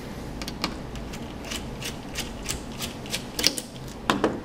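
Light, irregular clicks and ticks, about three a second, of a Phillips screwdriver working the spring-loaded heatsink screws on a laptop motherboard.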